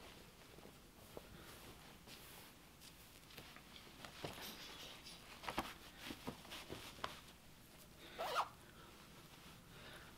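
Faint rustling of a thin synthetic base-layer top being pulled on, with a few light clicks and brushes, then its half-zip zipper drawn up briefly a little after 8 seconds in.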